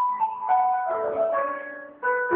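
A simple electronic tune from a toy tram, played as a melody of bright single notes; the phrase fades out near the end.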